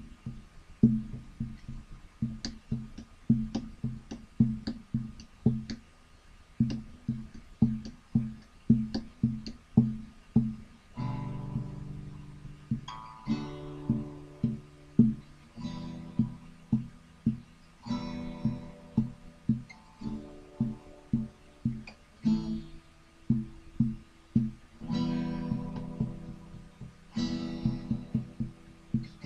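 Acoustic guitar played slowly in a blues-folk style: a steady picked bass-note pattern of about two notes a second, joined about eleven seconds in by fuller strummed chords that come back every couple of seconds.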